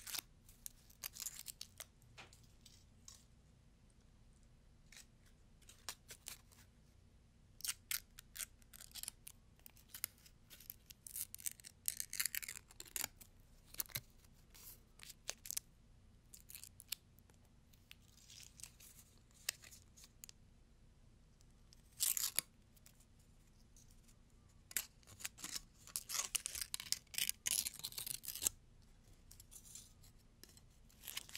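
Thick gold foil wrapper being torn and crinkled between fingertips close to a microphone: irregular sharp crackles in bursts with short quiet gaps, with the busiest crackling near the end.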